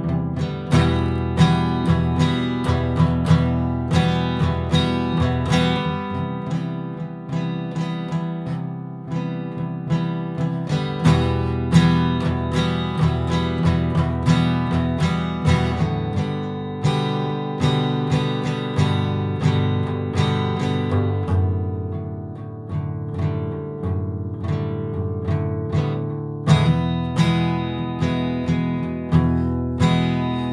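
Acoustic guitar strumming chords in a steady rhythm, changing chord about every five seconds.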